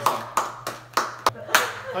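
Two people clapping their hands, a run of sharp claps about three a second, with a laugh near the end.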